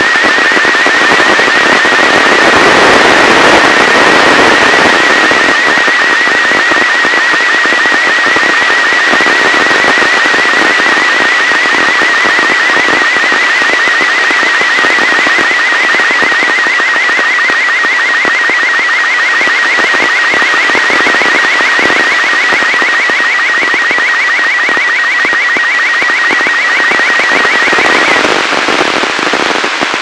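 Slow-scan television (SSTV) picture signal from the ARISSAT-1 amateur radio satellite, received by radio through heavy hiss. A thin warbling tone near 2 kHz ripples at an even rate, once per scan line, and cuts off a couple of seconds before the end. The hiss is strong because the satellite is still low in its pass and the signal is weak.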